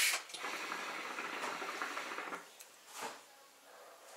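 Hookah water bubbling with a rapid, even gurgle as smoke is drawn through the hose, stopping about two and a half seconds in; a short breath follows near the end.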